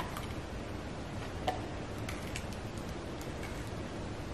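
A German shepherd–husky mix dog nibbling a raw carrot stick in small bites: a few short crisp crunches and tooth clicks, the loudest about a second and a half in, over a steady low hiss.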